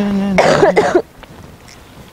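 A woman retching: a drawn-out gagging voice that breaks off about half a second in, followed by a short, harsh coughing heave.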